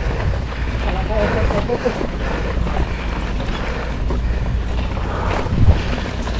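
Wind buffeting an action camera's microphone while mountain biking, a steady low rumble throughout. A single thump about five and a half seconds in.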